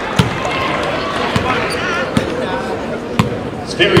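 A basketball bounced on a hardwood gym floor, four bounces about a second apart.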